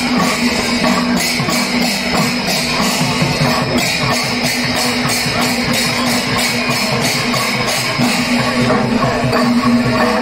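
Kerala temple-festival percussion ensemble playing live: drums with metal cymbals clashing in a steady beat, about two to three strokes a second, over a steady held low note.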